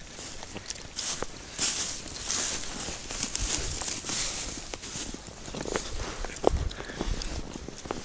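Footsteps crunching through thin snow and dry grass, an irregular run of short crunches.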